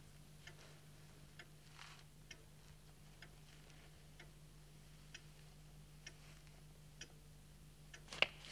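A clock ticking slowly and faintly, about one tick a second, over a steady low hum, with a soft rustle about two seconds in.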